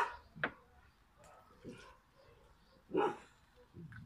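A dog barking in the background: a bark right at the start, another about half a second later, and a third about three seconds in.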